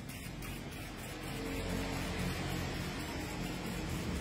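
Steady low background rumble with soft sustained music notes coming in about a second in.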